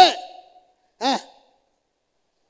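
A man's voice through a microphone: a spoken phrase trailing off at the start, then one short voiced syllable about a second in, with silence between and after.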